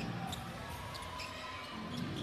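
Basketball being dribbled on a hardwood court over a steady arena crowd murmur.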